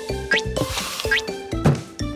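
Playful cartoon background music with comic sound effects: two quick rising 'bloop' blips, then a soft thump near the end.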